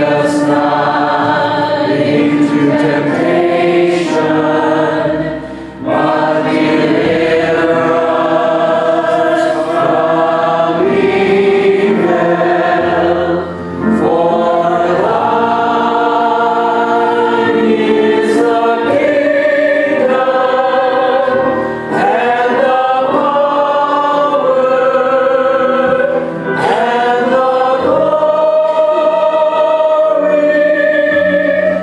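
A church congregation singing together in long, held phrases, with brief pauses for breath between lines.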